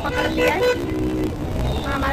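Street traffic with a vehicle horn sounding briefly, under a woman's voice.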